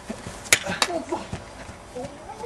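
Faint voices on the lawn, with two sharp clicks about half a second and just under a second in.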